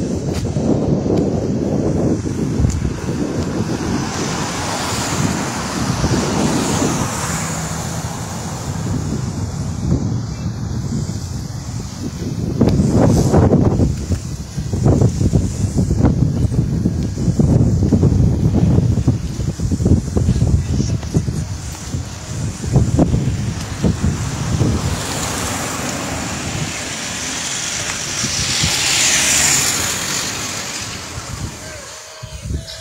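Wind buffeting the microphone of a phone held out of a moving car, over the car's road noise, gusting louder through the middle.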